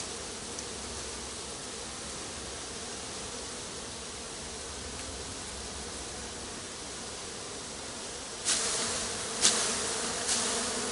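Honeybee swarm buzzing, a steady hum of many bees in flight around the cluster. Near the end, two brief louder noises cut across the hum.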